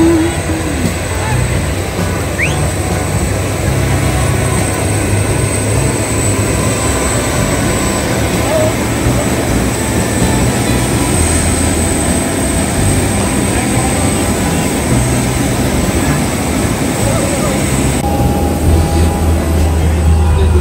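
Steady jet-aircraft noise on an airport apron: a low rumble with a thin high whine held above it. Near the end the hiss thins out and a low hum takes over.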